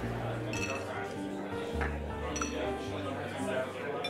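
Pub ambience soundscape: glasses and cutlery clinking now and then over a murmur of chatter, with background music of held notes and a low bass line.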